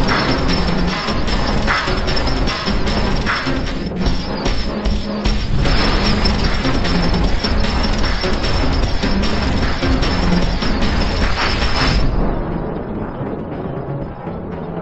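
Action-movie soundtrack from a fan edit: loud music mixed with dense booms, crashes and impacts from a giant-robot fight. It turns duller and quieter about twelve seconds in.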